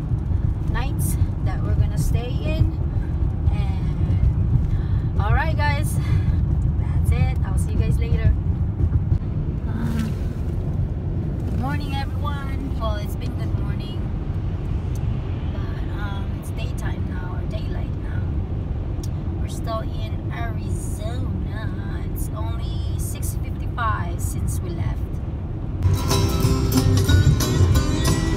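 Steady low road rumble inside a moving car's cabin, from tyres and engine while driving, with voices talking intermittently over it.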